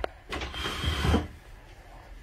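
A wooden trundle bed being pushed into a daybed frame: a knock, then about a second of wood scraping and rubbing on wood as it slides in. The trundle fits tightly and grinds against the frame.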